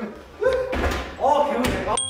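Voices talking, with two sharp thuds, one under each phrase.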